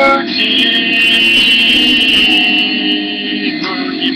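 Electric guitar played through effects, holding one long, slightly wavering high note for about three seconds over lower sustained notes.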